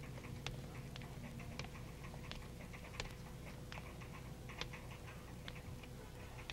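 Faint footsteps on a hard floor, a sharp tick about every two-thirds of a second, over a steady low hum.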